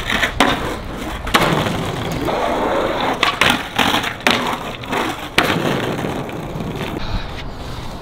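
Skateboard on a waxed concrete ledge: the deck and trucks scraping and sliding along the edge between stretches of wheels rolling on concrete, broken by several sharp clacks of the board popping and landing.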